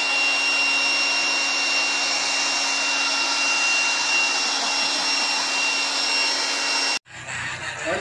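A loud, steady rushing noise with a thin high whistle running through it, like a blower; it cuts off abruptly about a second before the end.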